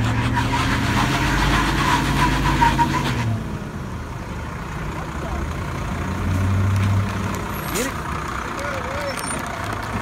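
Heavy truck engines revving hard under load for about three seconds as a fire engine is pulled out of mud, with a loud rushing noise over the engine note, then dropping back. A second, shorter swell of engine power comes a little after six seconds, and there is a single sharp click near eight seconds.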